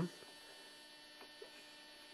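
Faint, steady electrical mains hum, with a couple of faint light ticks a little past a second in.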